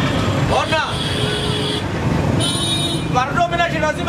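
Street traffic noise with motor vehicles running past as a steady background, with a few brief tonal sounds in the first half. A voice starts speaking about three seconds in.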